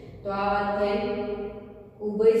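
A woman's voice holding one long vowel at a steady pitch for about a second, a drawn-out syllable in the middle of lecturing, fading out near the end.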